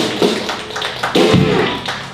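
Irregular sharp taps over room noise, with a short voice about a second in.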